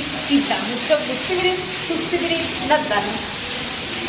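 Rainwater pouring off a roof in a heavy stream and splashing into a stone courtyard, a steady hiss, with a woman's voice over it.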